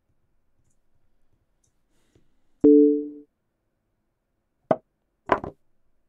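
Online chess board sound effects during a blitz game: a short two-note tone partway through, then two sharp clicks of moves being played.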